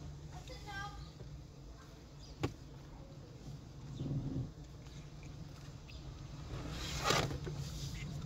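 Car engine and cabin hum, heard from inside a car driving slowly. A sharp click comes about two and a half seconds in, and a short loud hiss about a second before the end.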